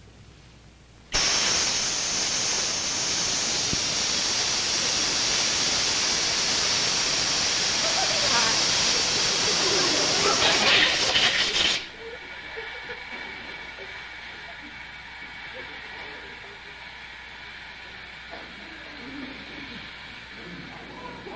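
Loud steady hiss of gas rushing out of a nitrous oxide (laughing gas) cylinder as its valve is opened. It starts suddenly about a second in and cuts off abruptly after about ten seconds.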